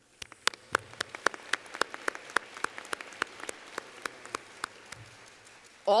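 Audience applauding in a hall: a patter of many hand claps with sharp individual claps standing out, thinning out towards the end.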